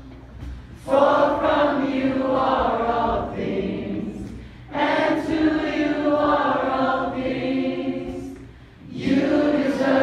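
A group of worship singers singing together in three long phrases, with short breaths between them: one about a second in, one near the middle, and one beginning just before the end.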